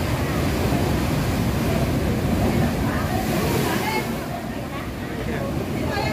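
Sea waves breaking at the mouth of a rocky sea cave, a continuous rush of surf and water washing over the rocks, easing a little in the last couple of seconds. Faint voices underneath.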